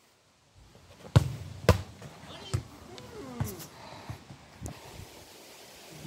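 A football being kicked and bouncing: two sharp thuds about half a second apart a second in, then a few fainter knocks.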